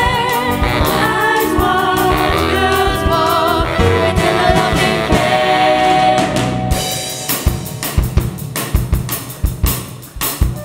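Live school band with singers, keyboard, horns and strings playing a sung pop number. About seven seconds in the full band drops away, leaving a drum kit playing a short break of separate hits.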